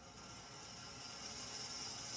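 A ball rolling down a long metal ramp, a steady rolling hiss that grows gradually louder.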